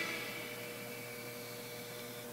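A lull in the television's sound: the music dies away at the start, leaving a faint, steady hum.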